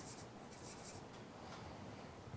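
Felt-tip marker writing on a paper flip chart, a series of faint, short scratchy strokes.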